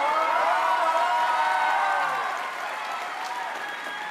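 Studio audience clapping and cheering, with voices calling out over the applause; it eases off a little past halfway.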